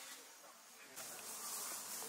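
Steady high-pitched drone of insects, which gets louder about a second in.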